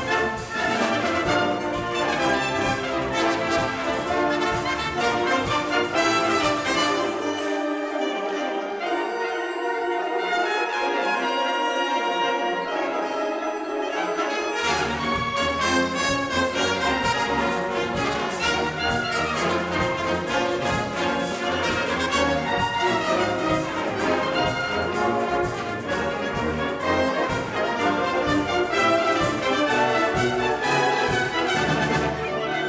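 Symphonic wind band playing, with the brass prominent. About seven seconds in, the low instruments drop out and only the upper voices play for several seconds; then the full band comes back in.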